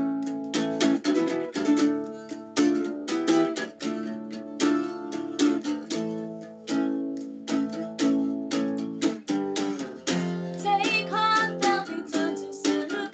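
Guitar strummed hard in a quick, steady rhythm, an instrumental passage of a song. A woman's singing voice comes back in near the end.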